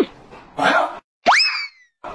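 Cartoon sound effects: a whistle sliding steeply down in pitch at the start, a short rough burst about half a second later, then a quick upward boing-like glide that sags back down and fades.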